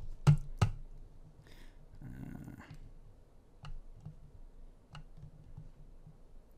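Computer keyboard and mouse clicks: two loud, sharp clicks just after the start, then a few fainter, widely spaced ticks.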